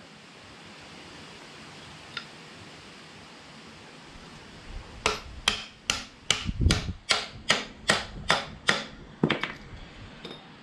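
A mallet tapping a short length of pipe set over the stud of a new engine mount, driving the mount up onto its locating pin on a Toyota 2H diesel engine block. About a dozen quick sharp taps, roughly three a second, come in the second half, one landing with a heavier thump.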